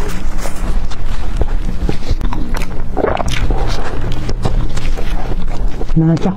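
A soft, cream-filled pork floss bread roll being torn and squeezed apart by hands in thin plastic gloves, close to the microphone: irregular rustling, crackling and squishing.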